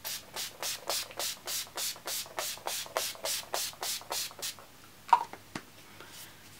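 Urban Decay All Nighter setting spray pumped in quick repeated spritzes, about fifteen short hissing puffs at roughly three a second, for about four and a half seconds. A light knock follows about five seconds in.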